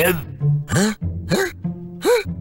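A cartoon character's voice laughing in three or four short separate bursts, over background music with low held notes.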